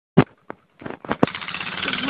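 Quad bike (ATV) engine starting: a few separate sputters, then from just over a second in it runs with a rapid, even pulsing.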